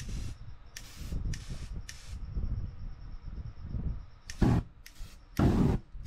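Short hissing bursts from an aerosol spray-paint can, four in quick succession, then two louder whooshing bursts near the end as a flame flares up in front of the painting.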